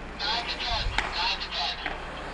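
Faint voices talking in an ice rink, much quieter than the commentary, with one sharp knock about a second in.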